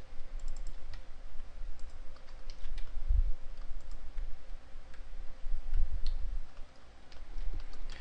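Computer keyboard and mouse being worked: scattered, irregular clicks over a low rumble.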